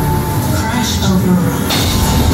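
A live band playing industrial electronic music loudly: a dense, noisy passage with heavy low end and a voice in it. A sudden noise burst hits just before the end.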